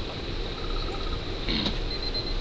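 Insects trilling steadily, a thin high continuous tone over a low background hum, with a brief burst of noise about one and a half seconds in.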